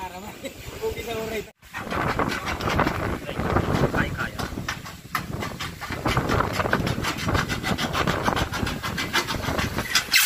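Aviation tin snips cutting through pre-painted metal tile roofing sheet, a quick run of many metal snips in a row that starts about two seconds in.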